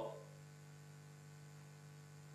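Near silence: a faint, steady electrical hum in the room tone.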